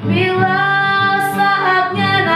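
A woman singing an Indonesian gospel song with acoustic guitar accompaniment, holding long notes with a short sibilant consonant about a second in.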